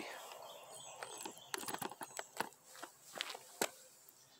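A few irregular light knocks and scuffs, about seven across the few seconds, as a handheld camera is tilted down and rubber-soled shoes shift on a concrete pad. Faint bird chirps early on.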